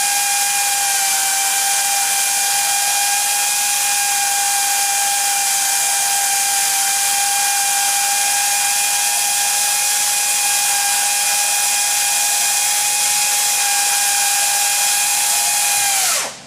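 Pneumatic air motor driving the rotating head of a split-frame pipe cutting and beveling machine while the tool bit feeds in toward the pipe: a steady whine over a strong hiss. It shuts off suddenly near the end.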